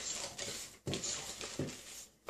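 Wire whisk stirring thick batter with chocolate chips in a mixing bowl: quiet swishing with a few light knocks of the whisk against the bowl.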